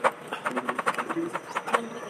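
A quick run of small clicks or taps, several a second, opening with one sharper click, under faint background voices.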